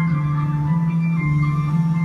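Figure-skating program music playing over an arena's sound system, heard from the stands: a held low note with a higher melody moving above it.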